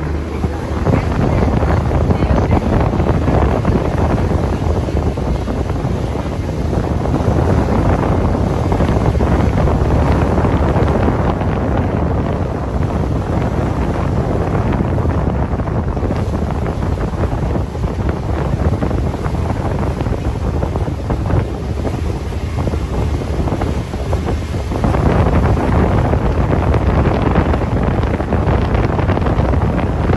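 Wind buffeting the microphone on the open deck of a moving sightseeing boat, over a steady low rumble of the boat and its wash on the water. It gets louder for the last few seconds.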